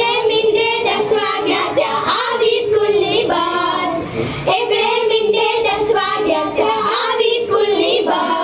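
Young girls' voices singing a children's song (baal geet), one continuous melody with wavering held notes.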